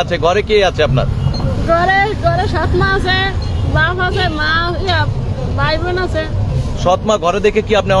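A high-pitched voice speaking, over a steady low background rumble.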